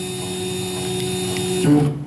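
Tormach PCNC1100 mill's X-axis stepper drive moving the table on X: a steady low hum with an overtone that stops about 1.7 seconds in.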